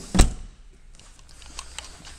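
Boot lid of a 2007 Audi A6 sedan shut by hand, closing with a single loud thump about a quarter of a second in.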